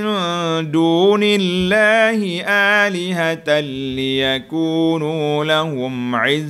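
A man reciting a Quranic verse in Arabic as a melodic chant, holding long, wavering notes with only short breaths between phrases.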